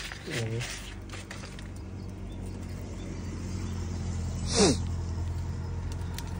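A steady low hum that grows slowly louder. About two-thirds of the way through, a single short sound sweeps sharply down in pitch and is the loudest thing heard.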